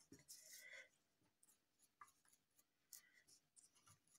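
Near silence with faint scratchy brushing in the first second and a light tick about two seconds in: a dry paintbrush being scrubbed over small molded decor pieces.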